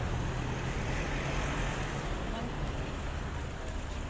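Steady outdoor street noise with traffic and faint voices of people nearby.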